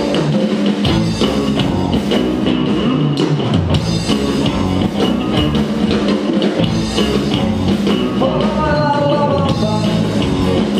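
Live rock band playing: drum kit, bass guitar and two electric guitars. A held melodic line comes in about eight seconds in.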